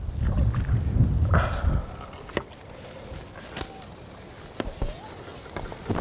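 Water splashing and sloshing for about two seconds as a hooked roach is drawn into a landing net at the water's edge, followed by a few light clicks and knocks.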